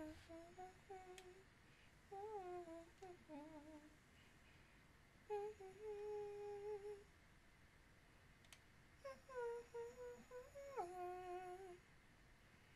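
A woman humming a tune in four short phrases with pauses between them. The third phrase holds one steady note for about a second and a half, and the last ends on a drop in pitch.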